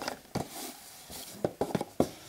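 Cardboard phone box being handled and closed, giving a few light knocks and scuffs, one about a third of a second in and a small cluster near the end.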